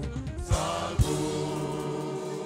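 Church choir singing gospel music, with a low beat about twice a second that stops about a second in while the voices hold a sustained chord.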